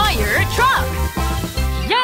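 Children's song: a sung vocal line with the lyric "Fire truck" over a backing track with a steady bass beat.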